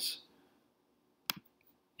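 A single sharp computer mouse click about a second in, against near silence.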